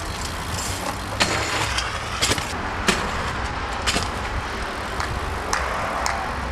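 BMX bike rolling over paving with a steady rush of tyre and wind noise, broken by sharp clicks and knocks about once a second.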